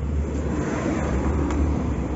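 A car going by on the street: a steady low rumble with no clear rises or breaks.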